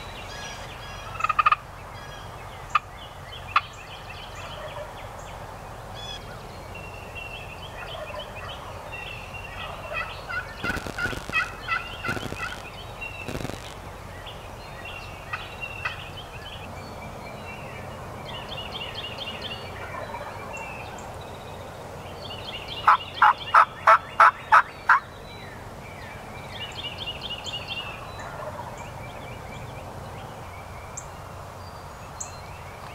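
Wild turkeys calling, with other birds calling in the background. There is a run of calls a third of the way in, and a louder series of about eight evenly spaced yelp-like notes a little past the middle.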